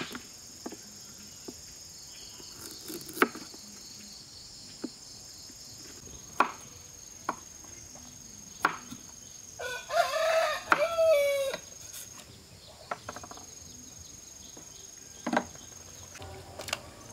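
A large kitchen knife slices small green figs on a plastic cutting board, with sharp knocks a few seconds apart. About ten seconds in, a rooster crows once for about two seconds, over a steady high insect drone.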